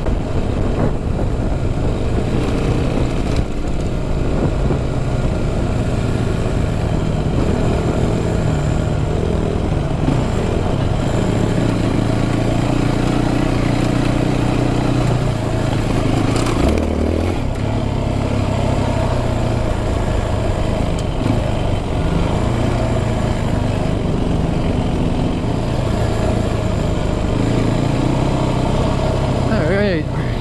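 Yamaha WR426 dirt bike's four-stroke single-cylinder engine running under way, its pitch rising and falling with the throttle, mixed with wind rushing over the microphone.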